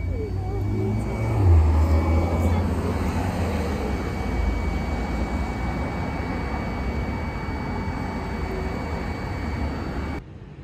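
Steady low engine rumble, swelling about a second and a half in and staying loud.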